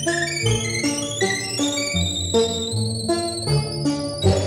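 Electronic instrument music from a Trautonium: a brisk dance movement of short, stepping pitched notes in several voices over a moving bass line, with a thin high line above.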